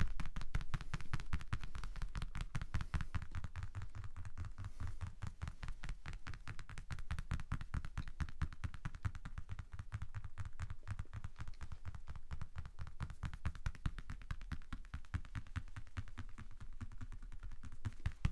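Rapid, steady light tapping on a small handheld object, several taps a second, close to the microphone, in the manner of ASMR tapping.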